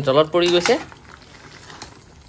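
Soya chunk and potato curry simmering in its gravy in a steel kadai, a faint bubbling that is heard once a short bit of speech stops, less than a second in.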